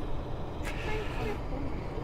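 Faint distant voices over a low steady outdoor rumble, with one short click about two-thirds of a second in.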